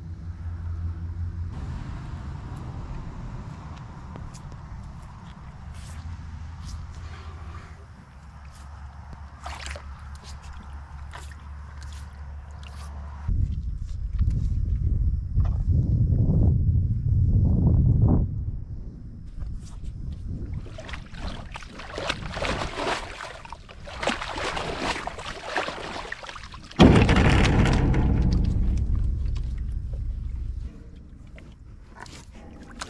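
Bison drinking at a stock tank, the water sloshing and gurgling as they put their noses in, louder in the second half with a sudden loud splash near the end. A steady low rumble runs under it.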